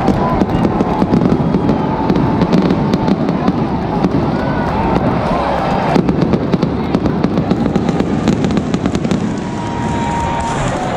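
Fireworks going off in rapid cracks and pops, thickest from about six seconds in, over the steady noise of a large stadium crowd's voices.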